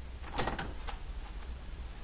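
A few light knocks and a short scrape as an aluminum cook pot is handled on its aluminum windscreen pot stand, about half a second in, over a steady low hum.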